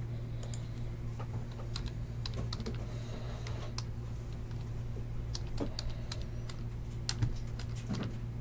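Computer keyboard being typed on in short, irregular runs of key clicks, over a steady low hum. There is a slightly louder knock about seven seconds in.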